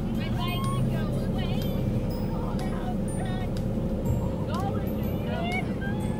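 Steady low hum inside a car idling in a slow-moving line, with indistinct voices in the background.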